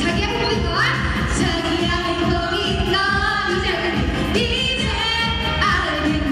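Korean trot song performed live: female vocalists singing into microphones over music with a steady beat.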